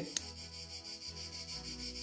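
A single sharp snip of bonsai scissors cutting a shoot on a Grewia bonsai, just after the start, followed by a faint steady background.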